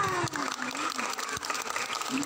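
Crowd of children chattering and calling out, with a few sharp clicks.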